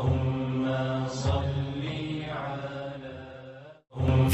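A man's voice chanting in long, held notes with a few slow changes of pitch, fading out just before the end.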